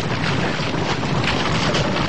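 Earth-splitting sound effect: a loud, steady rushing rumble of the ground breaking open.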